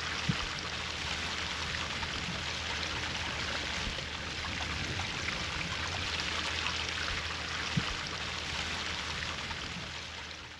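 Gray water draining through an open RV sewer gate valve and clear elbow fitting into the sewer hose: a steady rushing trickle. Two small knocks, one near the start and one near the end.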